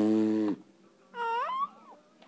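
A baby's brief high-pitched squeal, rising then dipping, about a second in. It is preceded by a short, steady low hum, the loudest sound, which stops about half a second in.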